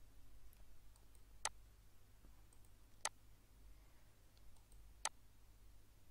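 Three sharp computer mouse clicks, about a second and a half to two seconds apart, with a few fainter ticks between them, over a faint steady low hum.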